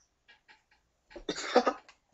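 About a second of near silence, then a person's short vocal burst: a few quick, breathy pulses lasting about half a second, like a cough or the start of a laugh.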